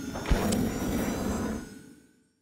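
Logo-sting sound effects: a sweeping whoosh and a low thump about a third of a second in, over faint held tones, fading out near the end.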